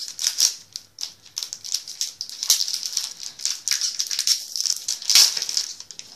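Foil wrapper of a Pokémon trading card booster pack crinkling and rustling as it is handled and opened. The crackling is irregular, with a few louder rustles about half a second, two and a half and five seconds in.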